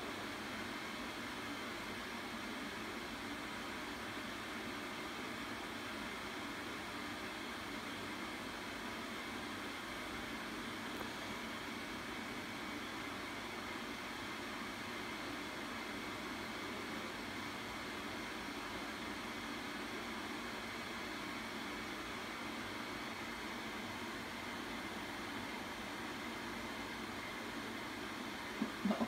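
Steady, even background hiss with a faint hum, like a fan or air handler running, unchanging and with no other sounds over it.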